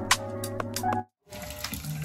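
Corded electric hair clipper with a number three guard buzzing steadily while shaving the side of a toddler's head, with light ticks over the hum; it cuts off abruptly about a second in.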